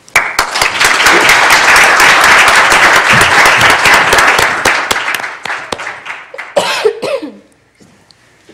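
Audience applauding in a hall, starting suddenly and loud, then thinning out and dying away over the last couple of seconds. A brief cough-like vocal sound comes near the end.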